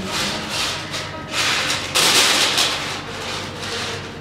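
Soft background music under a run of hissing, whooshing noise surges that swell and fade, loudest about two seconds in.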